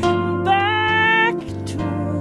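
Electric harp playing a slow D-minor blues, plucked notes ringing over sustained low bass notes. A woman's voice sings one held note from about half a second in until just past a second, rising slightly in pitch.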